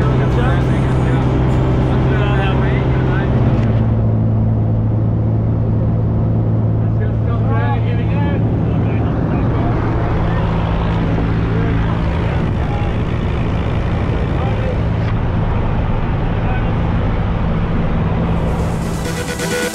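Light aircraft's piston engine and propeller droning steadily in the cabin, its note shifting slightly a few seconds in.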